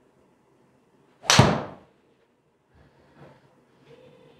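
Golf driver striking a teed ball: one sharp, loud crack about a second in, fading away over half a second.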